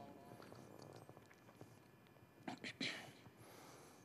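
Near silence between recited verses. The echoing end of the reciter's chanted phrase dies away at the start, then a few faint mouth clicks and a short in-breath come about two and a half to three seconds in.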